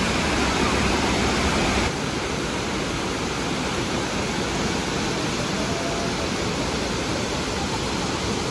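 Steady rushing roar of a large waterfall, Burney Falls, pouring into its plunge pool. About two seconds in the level drops slightly at a cut between shots.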